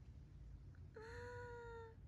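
A woman's drawn-out, high-pitched "aww" of cooing, one steady held note of just under a second, starting about a second in.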